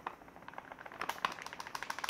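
Frying powder pouring from a plastic bag into a ceramic bowl: a faint, soft patter of many tiny ticks that thickens about half a second in.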